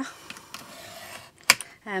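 Faint rustling of paper and hand tools, then one sharp click about one and a half seconds in as a craft knife is set against a clear ruler on a stack of paper pages, ready to cut.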